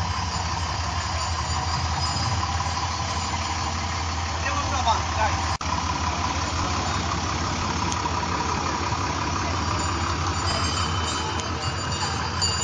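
Diesel engine of a John Deere 6510 farm tractor idling with a steady low drone.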